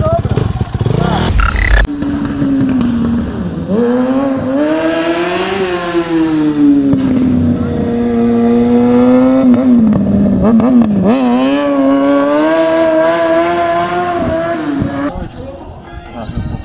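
Motorcycle engine held at high revs through a wheelie, its pitch swelling up and falling back several times, with a short dip partway through. It cuts off suddenly about a second before the end.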